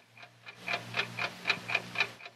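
Radio-drama sound effect of a clock ticking, about four ticks a second, growing louder over a low steady hum.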